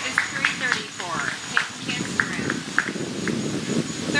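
Indistinct voices of people talking, with a low background murmur and a series of short, high-pitched chirps in the second half.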